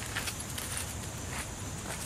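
A few soft footsteps on dirt and dry leaves over a steady background hiss.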